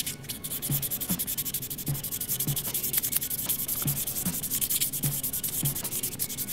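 Fine-grit sandpaper rubbed back and forth over the edge and response groove of a yo-yo, a fast, even run of short scratching strokes. The edge is being smoothed so it stops wearing the string.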